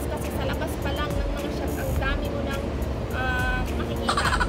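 Steady low rumble of city traffic, with a woman's voice and background music over it.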